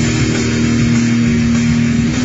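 Yamaha Pacifica electric guitar, heavily driven, holding one long sustained note.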